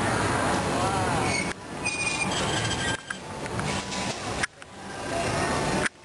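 Steady roar of a glassblower's glory hole furnace while a piece is reheated on the rod, with faint voices under it. The sound drops out abruptly three or four times and swells back each time.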